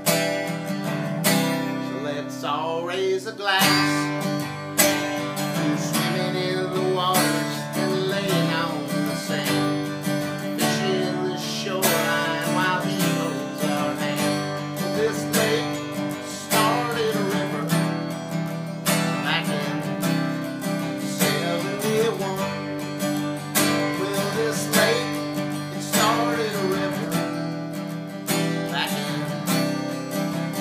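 Acoustic guitar strummed in a steady rhythm, accompanying a man singing.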